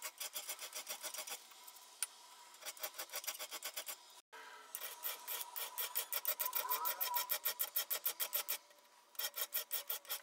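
Hand file rasping across an unhardened steel gauge blank in quick, even strokes, in bursts separated by short pauses, as the top surface is filed down flush with the clamped guide block. The sound drops out completely for a moment a little past four seconds in.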